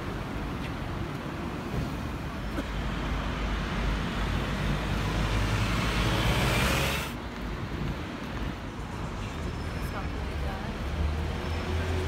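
City street traffic noise, a steady rumble of passing vehicles. It builds to a loud pass-by about six to seven seconds in, then drops away suddenly.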